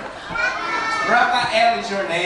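Speech through microphones: a man and children's voices talking, with no other distinct sound.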